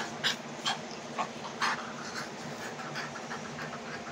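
A puppy play-biting and pawing at a person's hand, making several short, irregular breathy sounds.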